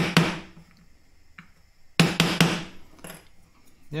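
Small steel pry bar knocking on a wooden strip laid over a heated silver coin, tapping the bent coin flat on an ordinary kitchen table. Quick groups of about three sharp knocks, one at the start and another about two seconds in. The table and loose items on it resonate, so the light blows sound much harder than they are.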